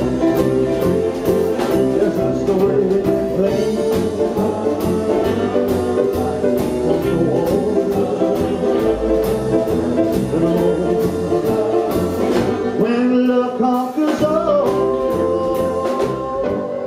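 Rockabilly band playing live: upright bass, electric and acoustic guitars, drum kit and keyboard, with a steady beat of about two drum strikes a second. Near the end the beat breaks off briefly and a held note follows.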